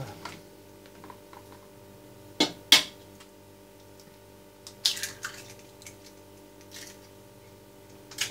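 Hen's eggs being cracked against the rim of a stainless steel stockpot: two sharp taps about two and a half seconds in, and a few more clicks around the five-second mark, over a faint steady hum.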